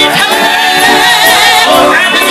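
Live gospel singing: a woman sings lead into a microphone with other voices joining, loud and continuous, the held notes wavering with vibrato.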